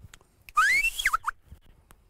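A ploughman's short, high-pitched whistled call to his ox team, starting about half a second in, rising in pitch and breaking off into a few quick strokes.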